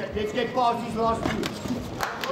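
Voices calling out at ringside, with a few sharp knocks in the second half.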